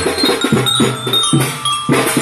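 Children's marching drum band playing: drum beats under a melody of short, ringing bell-like notes.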